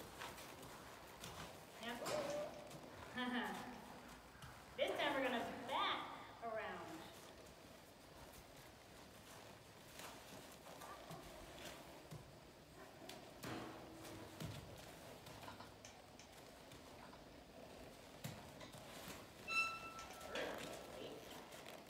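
A horse walking on soft dirt, its hoofbeats light and unhurried, as it is ridden through a metal gate. In the first seven seconds there are a few brief vocal sounds, and later there are a few sharp knocks.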